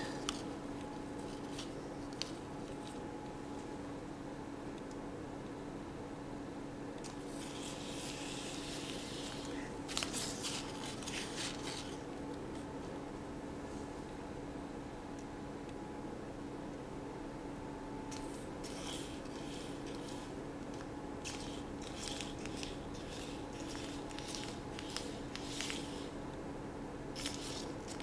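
Quiet room tone with a faint steady hum, broken by scattered light clicks and rustles a quarter to halfway in and again through the last third.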